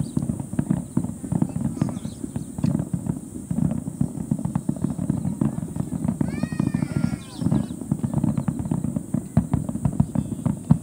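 Fireworks crackling: a dense run of rapid small pops that goes on without a break, with a few high falling tones about six seconds in.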